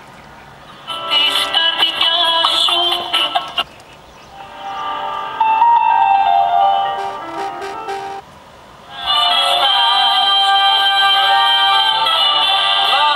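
Music from digital radio stations played by a DVB-T receiver as it steps from channel to channel: three stretches of music, each broken off by a short gap as the next station is tuned in.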